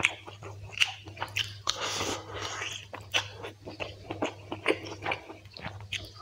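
Close-miked chewing and mouth sounds of a person eating rice and spicy quail curry, with irregular wet smacking clicks.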